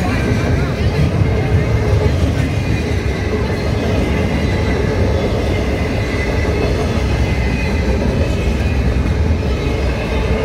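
Double-stack intermodal freight train passing close by at a grade crossing: a steady, loud rumble and rattle of well cars rolling over the rails.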